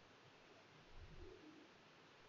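Near silence: room tone, with one faint, brief low sound about a second in.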